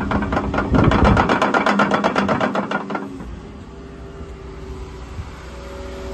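The diesel engine of a Volvo EC140EL tracked excavator running, with a fast, even ticking clatter over it for about the first three seconds. After that the engine runs quieter and steadier.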